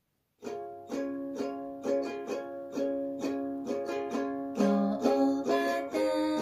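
Ukulele strummed in chords at about two strums a second, starting about half a second in; the strumming grows busier near the end.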